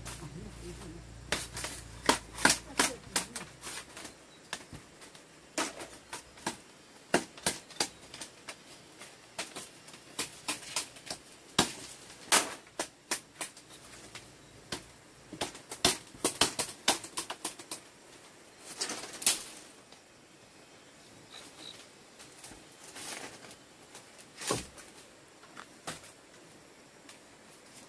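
A machete chopping and trimming a green bamboo pole: sharp knocks and clicks in irregular clusters, with a longer scraping stretch about three quarters of the way through and one heavier knock near the end.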